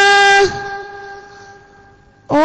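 A boy's voice holding one long, steady melodic note of Quran recitation through a microphone and hall speakers. The note ends about half a second in, and its echo dies away slowly at the same pitch.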